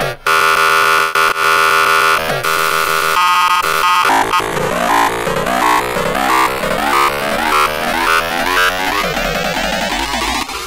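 Extratone electronic music: distorted kick drums repeated so fast that they merge into a harsh buzzing tone, layered with noisy synths. A loud held tone for the first two seconds gives way to a rapid stutter at about three seconds, then to repeating pitch sweeps.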